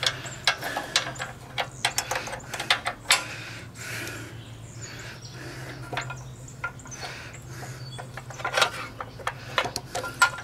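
Light metal clicks and clinks as a spark plug, its wire boot and a small tool are handled against a small edger engine while a spark test is set up, over a steady low hum.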